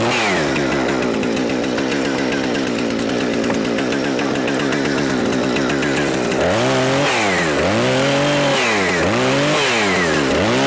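Two-stroke gas chainsaw running at high revs, cutting through wooden pallet boards. From about six and a half seconds the engine speed drops and recovers about once a second.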